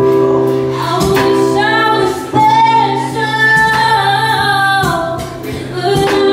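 Live jazz performance: a woman singing with a small band (keyboard, guitar and drums), holding one long note through the middle of the phrase.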